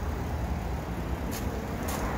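Steady low rumble of vehicle noise outdoors, with two faint clicks in the second half.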